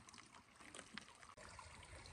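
Near silence, with the faint trickle of a small spring-fed creek and a few faint clicks.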